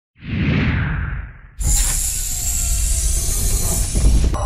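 Intro sound effects: a whoosh that swells and fades over the first second and a half, then a sudden cut-in of loud hissing noise over a deep rumble that carries on.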